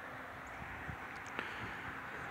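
Faint outdoor background noise: a steady low rumble with a few soft clicks, one sharper click about a second and a half in.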